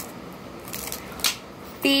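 Plastic packaging being handled, with a few brief scratchy rustles.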